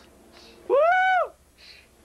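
A young man's high-pitched "Woo!" whoop: one drawn-out shout, about half a second long, rising and then falling in pitch, recorded on a 1980s VHS camcorder.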